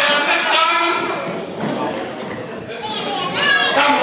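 People talking in a large hall.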